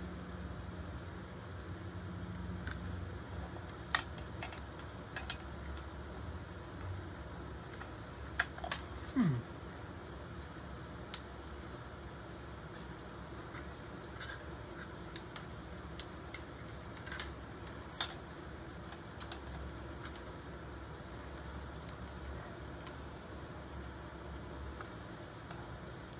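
Scattered small plastic clicks and taps from handling the frame and strap clips of LED headband magnifier glasses, with a few louder clicks around the middle, over a faint steady low hum.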